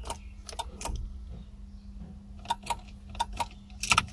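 Ignition key and keyring handled at the 2004 Smart Roadster's ignition lock: a series of sharp clicks and jingles, a few in the first second and a quicker cluster near the end, over a steady low hum.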